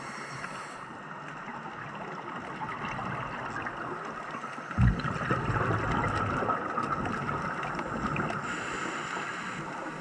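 Underwater noise heard through a camera housing, with a scuba diver's breathing: a low rumble of exhaled bubbles that starts with a thump about halfway through and runs for a few seconds, then a regulator hiss near the end as the diver breathes in.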